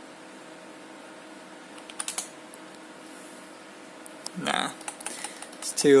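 A few sharp computer keyboard key clicks about two seconds in and again near the end, over the steady low hum of the water-cooled PC's fans and pump.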